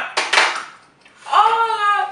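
A person with a mouthful of Sriracha hot sauce: a sharp breathy splutter just after the start, then a strained, pitched groan in the second half, the sound of the burning sauce being held in the mouth.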